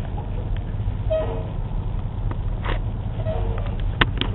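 Two short car-horn toots about two seconds apart, over the steady low rumble of idling vehicles in stopped traffic.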